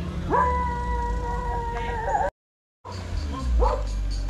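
A dog giving one long, steady howl that rises at the start and holds its pitch for about two seconds before it cuts off abruptly, over a low engine rumble.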